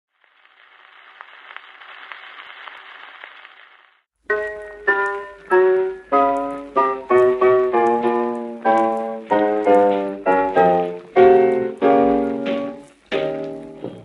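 Surface hiss and crackle of a 78 rpm shellac record in the lead-in groove for about four seconds, then solo piano chords of a 1930 hot jazz recording begin with sharp, decaying strikes in a steady rhythm, the disc's crackle still beneath.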